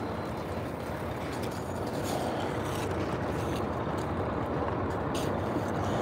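A steady low rumble of a vehicle engine running.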